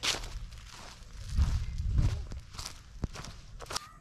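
Footsteps on a dry, leaf-littered dirt trail, with scattered sharp clicks and a brief low rumble about a second and a half in.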